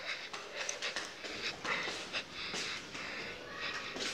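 Irregular breathy puffs and rustles close to the microphone, like a person breathing hard while walking with the phone.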